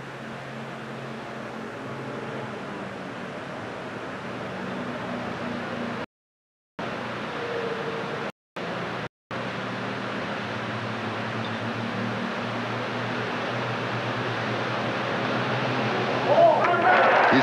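Steady hiss with a faint low hum from an old videotaped TV broadcast, slowly getting louder. It cuts to dead silence for about half a second some six seconds in, then twice more briefly near nine seconds.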